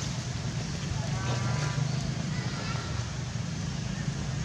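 Steady low hum of a running engine, with a brief pitched call, voice-like, about a second in.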